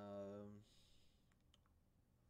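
The tail of a man's drawn-out "um", then a few faint, quick computer-mouse clicks about a second and a half in, otherwise near silence.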